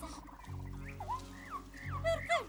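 Cartoon bird chirping in a few short swooping calls over background music with low held notes.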